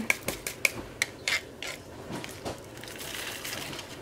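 Small square resin diamond-painting drills rattling and clicking against a plastic tray as they are tipped and shaken: a run of quick clicks in the first second and a half, then a fainter sliding hiss.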